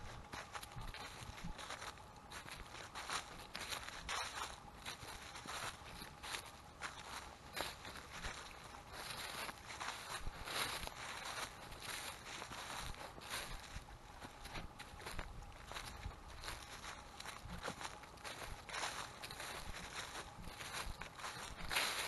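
Footsteps walking through a thick layer of dry fallen leaves, a steady run of short rustles at walking pace.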